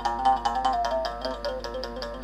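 Moungongo, the Gabonese mouth bow: its string struck rapidly with a stick while the player's mouth picks out a melody of overtones that steps downward in pitch.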